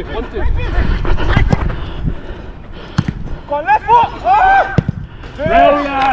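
Footballers shouting across the pitch over the wearer's running footsteps and a steady rumble of wind on the GoPro's microphone, with a single sharp knock about three seconds in and loud calls in the second half.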